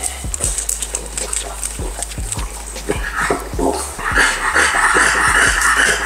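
French bulldog breathing noisily, with scattered short clicks and sniffs at first and, from about four seconds in, a louder continuous rasping breath, from a stud dog aroused during semen collection.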